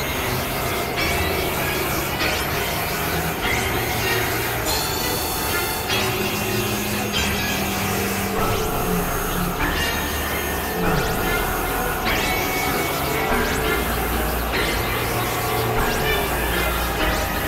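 Experimental electronic noise music made on synthesizers: a dense, hissing wall of sound over low held drone tones that shift in pitch every second or two, at a steady loudness.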